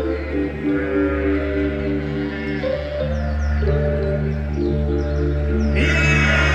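Live rock concert music over an arena PA: sustained keyboard chords that shift every second or so over a steady deep bass drone, with a few short high descending chirps.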